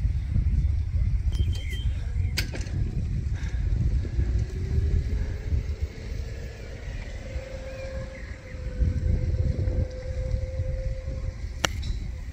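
Wind buffeting the microphone in a heavy low rumble, with a faint steady drone in the middle. Near the end comes one short, sharp hit: a golf club striking the sand and ball in a greenside bunker shot.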